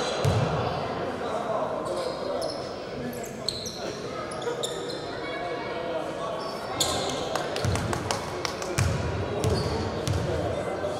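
A basketball bouncing on a hardwood gym floor with hall echo. There is one bounce at the start and a few dribbles near the end as the free-throw shooter readies at the line, with short high squeaks and voices in between.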